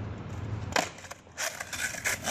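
Skateboard deck and wheels knocking against asphalt: one sharp knock a little under a second in, then a few quicker knocks near the end.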